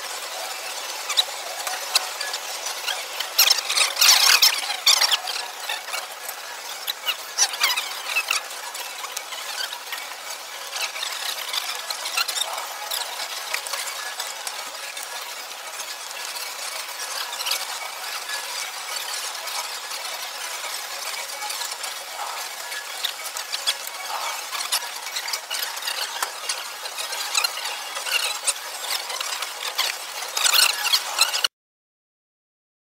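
Card-room background noise with scattered clicks of poker chips and playing cards handled close to the camera, a busier cluster of clicks around four seconds in.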